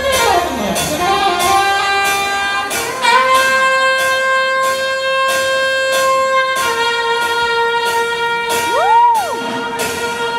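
Solo saxophone playing unaccompanied in a reverberant hall. A note falls away at the start, then long held notes step upward, with a quick swoop up and back down in pitch near the end.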